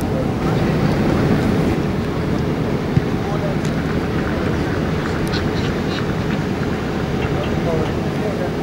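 Steady low rumble of wind buffeting the microphone on an open training pitch, with the murmur of a group of footballers' voices under it and a single knock about three seconds in.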